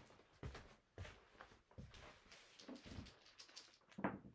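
Faint clicks and light knocks of casino chips being handled and set into a chip rack, a few separate taps with a quicker run of small clicks in the second half and a firmer knock at the end.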